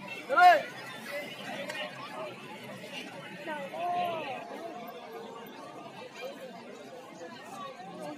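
Crowd chatter: many people talking at once, with one voice calling out loudly about half a second in and another raised voice around four seconds in.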